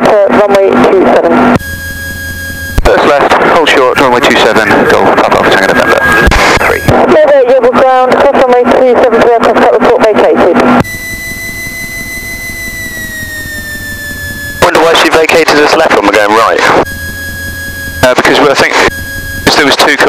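Voices over the aircraft radio and intercom in several loud bursts that cut in and out sharply. In the gaps the Socata TB10's piston engine comes through the intercom as a steady hum, its note falling slightly for a few seconds about eleven seconds in.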